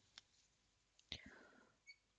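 Near silence, with a faint click and a short faint swish about a second in.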